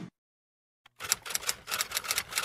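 Silence for about a second, then typewriter key clacks in a quick run of sharp clicks, several a second.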